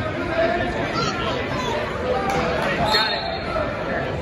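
Overlapping voices of spectators and coaches talking and calling out, echoing in a large gym. A couple of brief knocks come about two to three seconds in.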